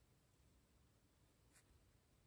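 Near silence: a small ink brush faintly stroking across paper, with one small click about one and a half seconds in.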